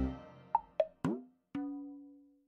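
Edited-in sound effects: the tail of a short musical jingle fading out, then three quick pops, the last one sliding down in pitch, and a held low ringing note that fades away.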